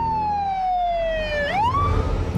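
Emergency-vehicle siren wailing: one long tone falling slowly in pitch, then sweeping quickly back up about a second and a half in.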